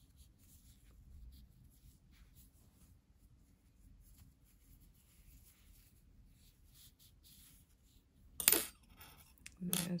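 Faint rubbing and rustling of yarn being worked along a large-eyed sharp needle and drawn through by hand, with one louder, brief scratchy rustle near the end.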